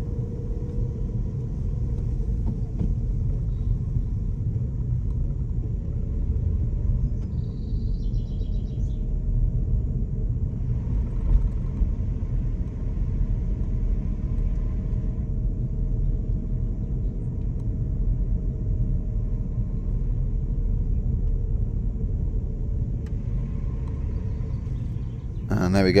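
Car interior noise while driving slowly at about 20 mph: a steady low rumble of engine and tyres with a faint steady hum. A brief high chirping comes about eight seconds in.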